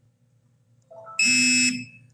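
Bartec Tech 500 TPMS tool's buzzer giving one loud, harsh beep about half a second long, after a faint short tone. It signals that the Schrader EZ-sensor has been programmed successfully.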